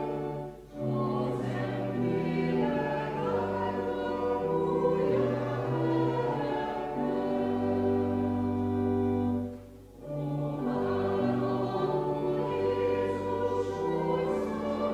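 Congregation singing a slow hymn together in long held notes, with a short break between lines about a second in and another near ten seconds.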